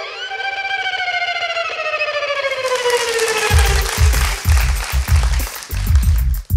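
Solo violin holding one long note that slides slowly downward in pitch. About halfway through, a backing track comes in with a steady low beat.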